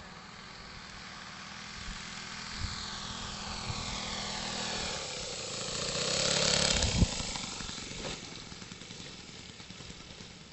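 A Seagull Decathlon 120 model tow plane's engine grows louder as the plane flies in low, passes close at about six seconds with a drop in pitch, then fades as it touches down. There is a sharp thump just after it passes.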